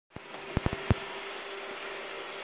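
Roomba robot vacuum running with a steady hum and a faint held tone. About five sharp knocks come in the first second.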